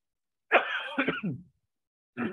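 A person clearing their throat once, about half a second in, lasting about a second.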